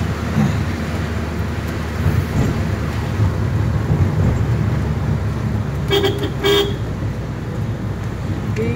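Car driving slowly, a steady low rumble of engine and road heard from inside the cabin; about six seconds in, a car horn gives two short toots about half a second apart.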